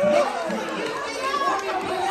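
Several people talking over one another, indistinct chatter with no clear words.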